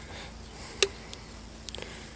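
Faint, steady low hum of running farm machinery, with one sharp click a little under a second in and a few light ticks near the end.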